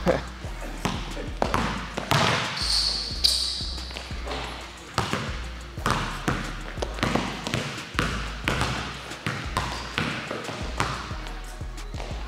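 Basketball dribbled repeatedly on a hardwood gym floor, about two bounces a second, with a brief high squeak about three seconds in.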